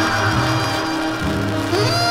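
Dance-band orchestra playing live: held horn and saxophone chords over a moving bass line.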